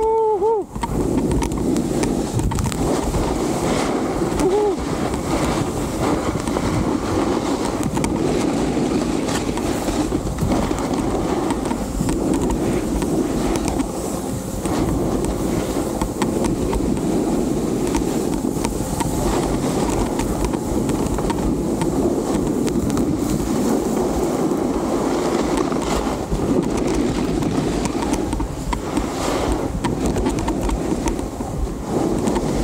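Snowboard sliding and carving down a hard-packed groomed slope: a steady scraping of the board's base and edges on the snow, mixed with wind noise on the microphone.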